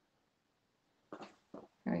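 Near silence, then about a second in a few short voice sounds from a woman, running into the start of speech.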